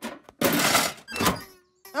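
Cartoon sound effect of the broken-down car's engine: a harsh noisy burst of about half a second, then a clunk. It is the sign of a car that doesn't sound good.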